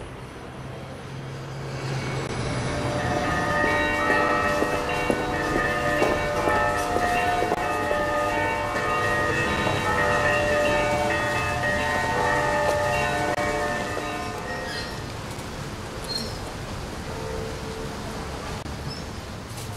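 Church bells ringing, several bells' tones overlapping and hanging in the air. The ringing swells in over the first few seconds and fades near the end.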